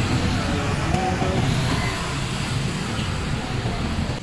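Busy city street traffic, mostly motor scooters and motorcycles riding past with their engines running, over steady road noise.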